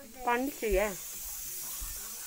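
Two short vocal sounds from a person, each with a wavering pitch, in the first second, followed by a steady high-pitched hiss that continues.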